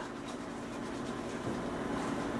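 Faint whisking of liquid gelatin in a small stainless steel pot, over a steady low hum.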